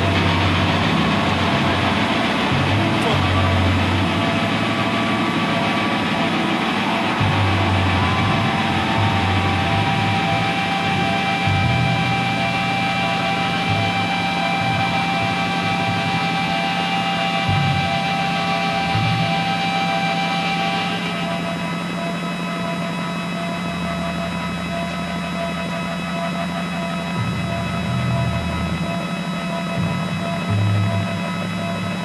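Live rock band music played through a festival PA, with sustained chords over bass and drums. About two-thirds of the way through the held tones stop and the top end suddenly thins out.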